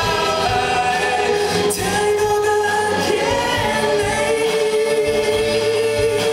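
Live rock band playing: electric guitars, bass guitar and drums, with a man singing long held notes into a microphone.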